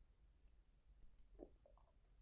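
Near silence: room tone, with two faint high clicks about a second in and a brief faint lower sound just after.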